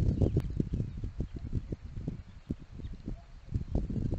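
Irregular low thumps and knocking at the nest-camera microphone as a second osprey lands and moves about on the stick nest.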